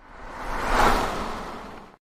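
Whoosh transition sound effect: a noisy rush that swells to a peak about a second in, then fades away.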